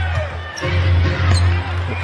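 Arena game sound: music with a steady heavy bass over crowd noise, which drops out briefly about half a second in, and a basketball being dribbled on the hardwood court.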